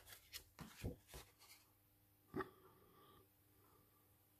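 Faint handling sounds of watercolour paper and a brush: a few soft rustles in the first second and a half, then a single short tap about two and a half seconds in.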